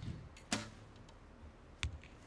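Camera shutters from photographers firing as a few scattered sharp clicks, the loudest about half a second in and just before the end.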